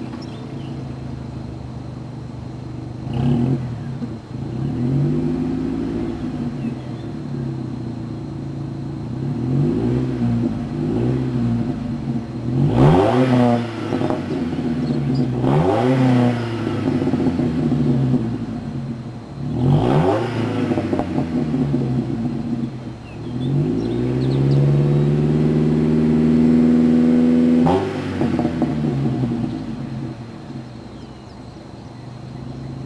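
2005 GMC Canyon's 2.8-litre inline-four exhaust, through a Flowmaster 40 Series muffler on the stock piping, idling with a steady burble and revved in place with several quick throttle blips. Near the end the revs are held up for about four seconds, then drop sharply back to idle.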